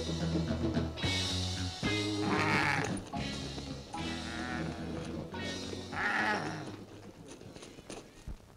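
Film soundtrack music of sustained low notes, with a wavering, bleat-like cry over it twice, about two and a half and six seconds in. The music fades near the end.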